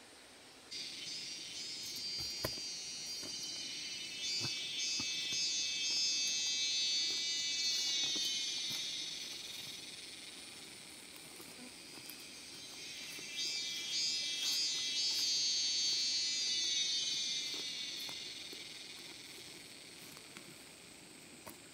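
Cicadas buzzing in a high, dense drone that starts abruptly about a second in, swells loud, fades, then swells again. A few faint knocks sound early on.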